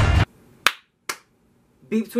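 Music cuts off just after the start, then two sharp hand claps about half a second apart. A man's voice starts near the end.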